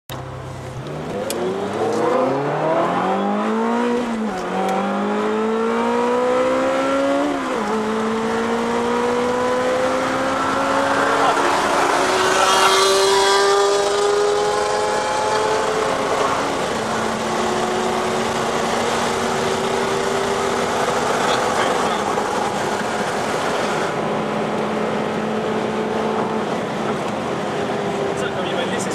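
Ferrari engine accelerating hard through the gears: the pitch climbs, then drops at each of four upshifts, before settling to a steady cruise. It is heard from inside a car.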